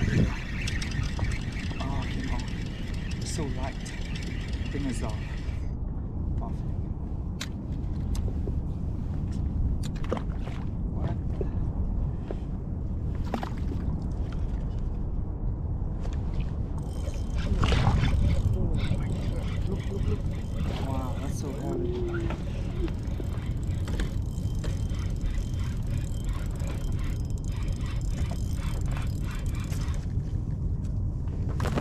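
Indistinct voices of people talking in the background over a steady low rumble, with scattered small clicks.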